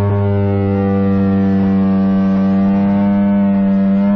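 A band's amplified instruments holding one steady, droning chord that does not change in pitch, with a few faint light hits.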